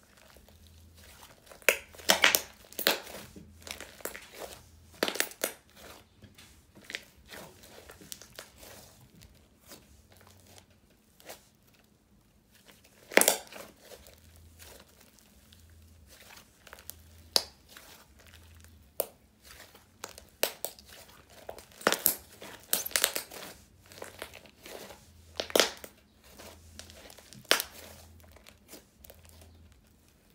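Soft clay-topped slime with rainbow foam beads being stretched, folded and squeezed by hand. It gives irregular sticky pops, crackles and snaps, a few of them sharp and loud.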